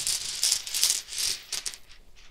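Small hard tokens rattling and clattering inside a velvet drawstring pouch as a hand rummages through them to draw one. The rattling stops shortly before the end.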